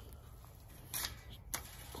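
Two short, light metallic clicks from a chain-link gate's fork latch being worked by hand, one about a second in and a sharper one about half a second later.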